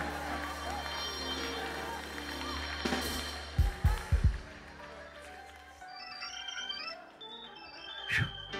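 Organ playing held chords in the pause of the sermon, with three short low thumps about three and a half to four seconds in. A low hum under it stops about six seconds in.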